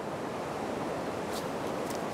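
Steady rushing of river rapids.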